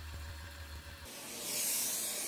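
A low steady hum from the milling machine stops about a second in. A shop vacuum then starts up with a rising hiss as it is brought in to clear cast-iron chips from the freshly cut port.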